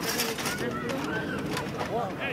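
Distant shouts and calls from rugby players across an open field, heard as faint rising and falling voices over outdoor background noise.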